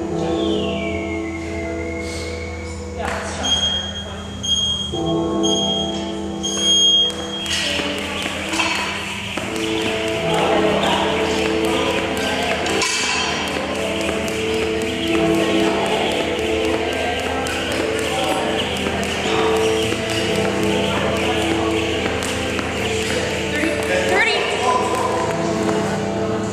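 Loud background music plays throughout. About three to seven seconds in, a gym interval timer beeps a countdown: three short beeps at one high pitch, then a longer start beep.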